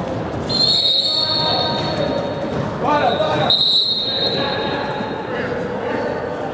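Referee's whistle blown in two long, steady blasts, about three seconds apart, echoing in a large indoor sports hall.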